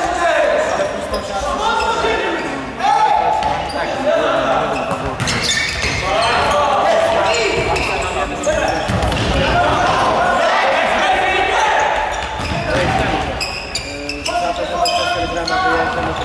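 Futsal ball being kicked and bouncing on a sports-hall floor during play. Voices call out across the hall, and everything rings with the hall's echo.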